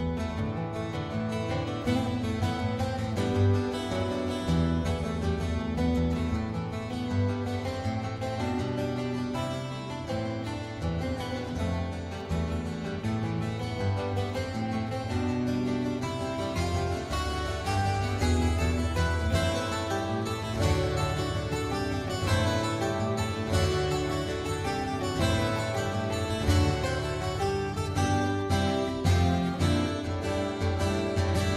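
Instrumental background music with quick plucked keyboard or string notes.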